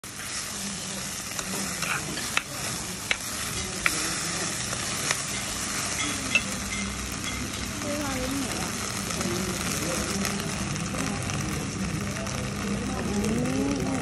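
Cantonese sizzling beef clay pot (jeejee pot) hissing steadily as the hot meat and aromatics are stirred with a metal spoon, with a few sharp clicks and pops in the first seven seconds.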